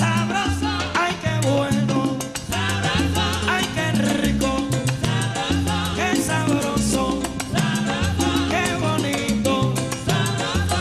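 Salsa band playing a son montuno without vocals: a repeating bass line under dense percussion and melody instruments.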